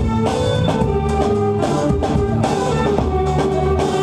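Live band music with a drum kit keeping a steady beat under held melodic notes.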